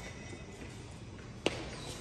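A single sharp knock about one and a half seconds in, over steady low room noise.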